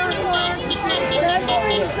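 Several people talking over one another at a street protest, the words blurred together, with passing road traffic behind them. A rapid, evenly pulsing high-pitched beeping runs underneath.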